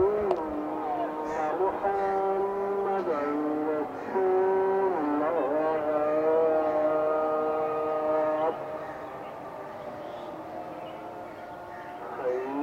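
A man's voice chanting in long, held notes that waver and slide in pitch between phrases, like a devotional chant. The loud phrase breaks off about eight and a half seconds in, leaving a fainter held note.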